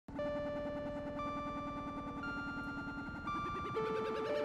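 Music begins abruptly: long held notes, shifting in pitch about once a second, over a dense, fast-pulsing texture.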